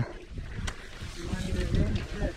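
Enduro dirt bike engine running at low revs, an uneven low rumble, with one short click a little under a second in.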